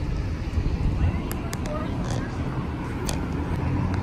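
Outdoor street background picked up by a handheld camera's microphone: a steady low rumble like traffic, with a few light clicks and faint voices.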